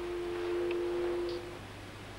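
A chord of steady, pure tones: one low tone, joined about a third of a second in by two higher ones. All stop together after about a second and a half.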